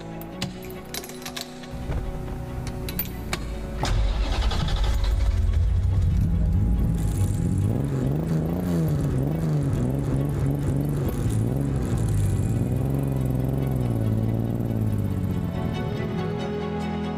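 Ignition key and switch clicks, then a 1960 Aston Martin DB4 Series II's twin-cam straight-six starting about four seconds in and revving, its pitch rising and falling again and again as the car drives, over background music.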